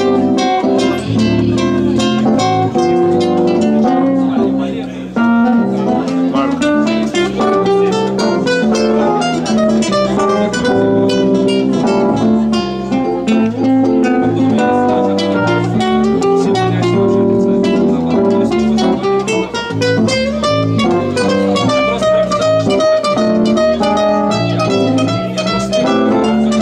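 Classical guitar playing a quick run of plucked notes over a sustained electric keyboard backing, with a brief drop in level about five seconds in.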